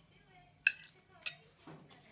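A metal fork clinks against a plate as it is set down: one sharp ringing clink about two-thirds of a second in, then a second, softer clink about a second later.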